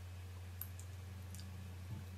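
A few faint, small clicks of the lips and mouth as a bullet lipstick is applied, heard over a steady low hum.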